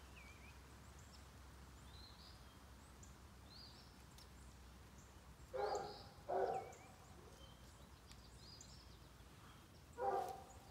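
A songbird chirping repeatedly in the background, with short high notes every second or so. Just after halfway there are two louder, short calls about half a second apart.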